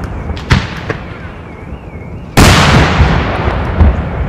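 Daytime aerial fireworks shells exploding: a sharp bang about half a second in, then a much louder report just past the midpoint whose rumble and echo fade slowly, and another bang near the end, with a faint wavering whistle between the bursts.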